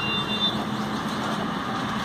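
Steady low hum under an even rushing background noise, with a brief high chirp in the first half-second.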